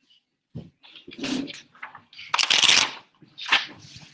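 Pages of a small paperback being leafed through: a series of paper rustles, the longest and loudest about two and a half seconds in.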